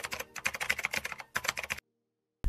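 Rapid keyboard-typing clicks, about ten a second, used as the sound effect for text being typed out; they stop shortly before the end.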